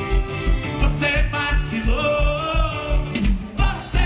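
Live axé band music: electric guitar and a steady kick-drum beat about three to four times a second, with a male lead voice singing.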